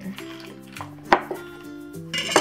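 A cleaver chopping once through smoked ham onto a wooden cutting board, a single sharp chop about a second in, over background music with sustained notes.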